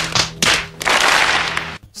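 A movie sound effect: a couple of sharp cracks, then about a second of loud, dense crackling hiss over a low steady hum, cutting off suddenly just before the narration resumes.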